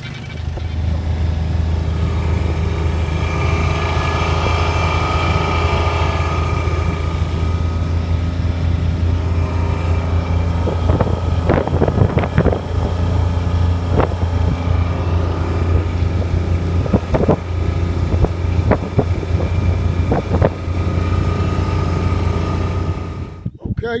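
Utility vehicle's engine running steadily as it drives along, a low drone heard from on board, with a few brief sharp knocks or rattles in the second half. The drone cuts off suddenly just before the end.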